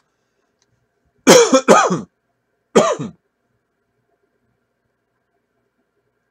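A man coughing: a quick run of about three loud coughs a little over a second in, then a single cough a second later.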